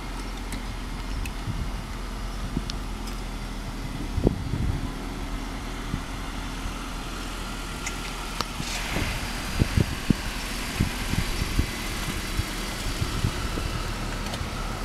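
A car engine idling steadily, with scattered soft low thumps and a few light clicks.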